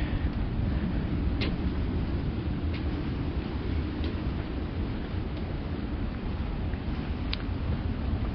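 Steady low outdoor rumble with no clear single source, with a few faint, short high ticks spaced about a second and a half apart and a slightly sharper one near the end.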